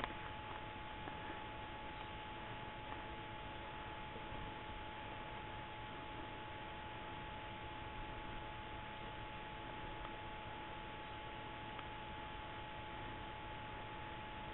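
Quiet bush ambience: a faint, even hiss with a thin steady tone, and a soft click right at the start. No birdsong or other distinct sound stands out.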